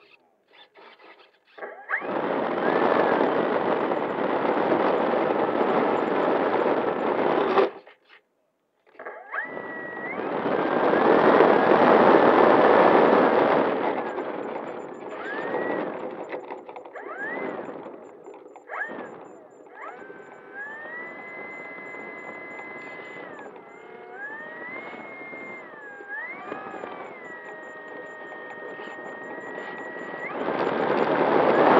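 RC model airplane's motor and propeller running on the ground. It starts with two stretches of loud rushing noise, then gives way to a high whine with overtones that rises and falls in pitch.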